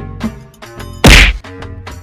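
A single loud whack about a second in, over a steady background music track.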